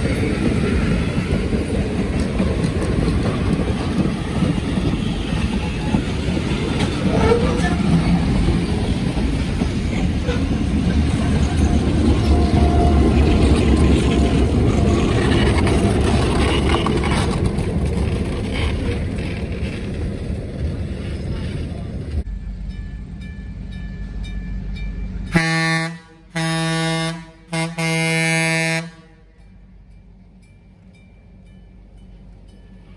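Vintage passenger coaches rolling past close by, wheels running and clacking on the rails, with the deeper engine rumble of the Chicago & North Western EMD F7A diesel locomotive as it goes by. Then, after a cut, a diesel locomotive's air horn sounds several sustained blasts in a row, the middle one longest.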